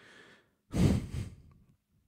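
A man's sigh into a close microphone: a short faint intake of breath, then a longer exhale about two-thirds of a second in that fades out over about a second.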